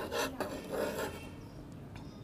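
Large tailor's shears cutting through shirt fabric, with a few rasping cuts along a curved line in the first second or so.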